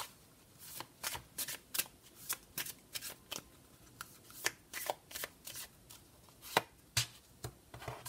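A deck of Sibilla fortune-telling cards being shuffled by hand: a string of sharp card slaps and clicks, two or three a second, with a short pause midway.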